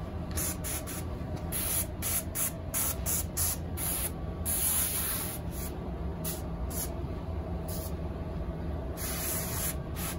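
Metal pump-up tank sprayer wand spraying liquid insecticide in repeated hissing bursts as the trigger is opened and shut, many quick spurts and a few held for about a second. A low steady hum runs underneath.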